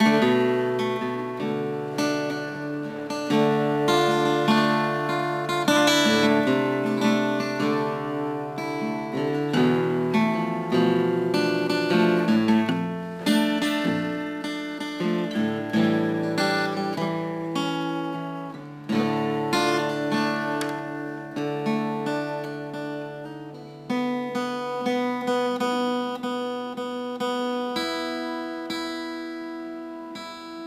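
Acoustic guitar played on its own, strummed and picked chords ringing out in a steady rhythm.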